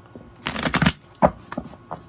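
A deck of tarot cards being shuffled by hand: a rustle of cards about half a second in, then a sharp tap and a couple of lighter clicks.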